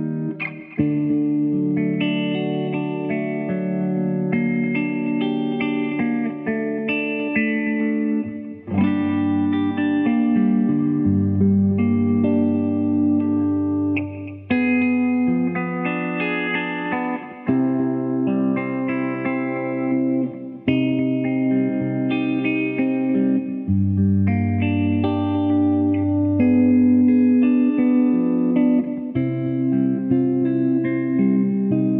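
Electric guitar with Lollar DC-90 hum-cancelling soapbar pickups, played through a Supro 12-inch combo amp with reverb, compression and delay. Ringing chords change every second or two, with deeper bass notes held in the middle and near the end.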